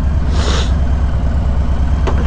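Motorcycle engine running steadily at low road speed, a continuous low rumble mixed with wind noise on the rider's microphone, with a short hiss about half a second in.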